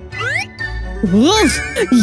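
Background music with a steady beat. About a quarter-second in, a short rising, tinkling reveal sound effect plays as a metal serving cloche is lifted. A voice's drawn-out, gliding exclamation follows in the second half.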